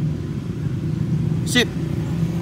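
Steady low hum of a running engine, even and unchanging.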